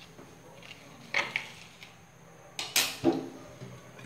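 A few short knocks and clinks of a stainless steel mixing bowl being handled and moved on a wooden table, the loudest about two and a half seconds in.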